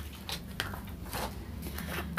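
Faint handling of a sheet of scrap paper, with a few light clicks and rustles, over a steady low hum.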